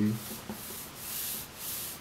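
A hand brushing and sliding across a spiral notebook's paper page: soft rubbing swishes that swell a few times.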